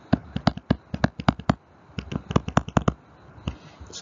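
Quick clicks and taps of a stylus on a tablet screen while handwriting, in two rapid clusters with a single tap near the end.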